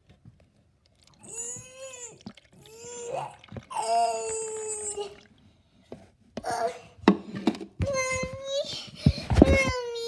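A girl's voice making drawn-out moaning, retching noises for a doll pretending to throw up, several separate sounds with short pauses between them. A brief rough noise comes about nine seconds in.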